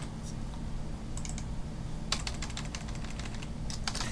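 Typing on a computer keyboard: a few light keystrokes about a second in, then a quick run of keystrokes through the second half.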